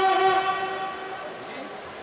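Spectator cheering the swimmers: one loud, long, wavering call that fades out about a second in.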